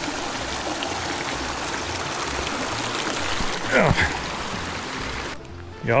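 Small rocky mountain creek running, a steady rush of water that cuts off abruptly about five seconds in.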